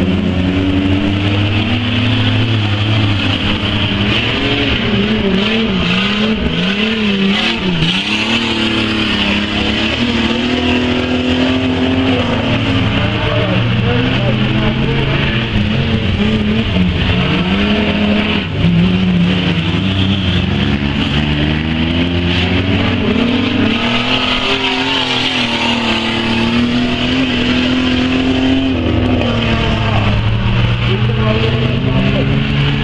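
Several stockcar engines racing on a dirt oval, revving up and down through the corner, their overlapping pitches rising and falling continuously.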